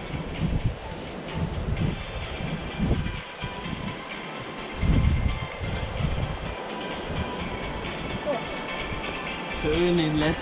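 Wind buffeting the microphone in uneven low rumbling gusts, strongest about five seconds in, with faint steady background music underneath.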